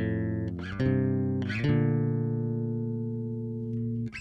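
Dahrendorf Daikatana 5-string multiscale (fanned-fret) electric bass played fingerstyle: three plucked notes about three-quarters of a second apart, the last left ringing and slowly fading for over two seconds.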